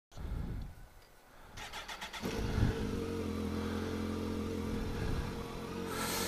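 Kawasaki GTR1400's inline-four engine being started: the starter cranks for about half a second, the engine catches about two seconds in with a short flare of revs, then settles into a steady idle.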